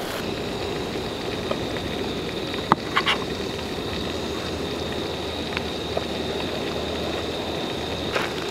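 Steady sizzle of chip-crusted trout frying in a pan, with a few light clicks about three seconds in.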